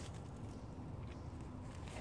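Quiet outdoor background: a low steady rumble with a few faint ticks, without any distinct event.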